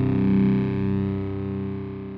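Heavily distorted electric guitar chord held and ringing out, fading away as the song ends.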